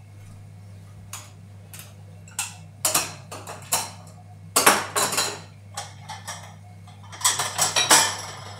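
Dishes and cutlery clinking and clattering as a dishwasher's racks are unloaded: irregular knocks, loudest about halfway through and again near the end, over a steady low hum.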